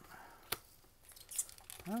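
Trading cards being handled and set down on a table: a single sharp tap about half a second in, then light rustling.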